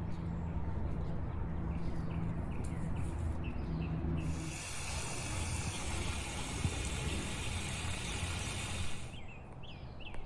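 Garden hose wand with a shower nozzle spraying water onto a flower bed: a steady hiss that starts about four seconds in and stops about a second before the end. Before the spray there is a low background hum with faint bird chirps.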